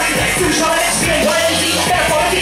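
Live hip hop performance through a PA: a rapper's voice over a beat with heavy bass.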